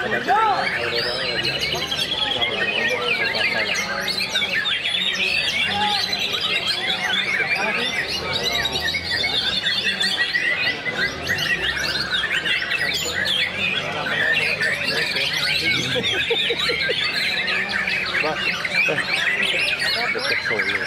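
Several caged white-rumped shamas (murai batu) singing at once, a dense, continuous tangle of overlapping rapid whistles, chirps and trills, with a murmur of human voices underneath.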